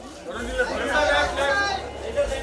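Overlapping chatter of several people talking and calling out at once.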